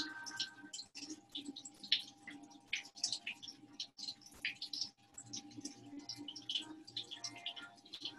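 Faint water-like trickling and dripping: many small irregular ticks and patters over a low steady hum.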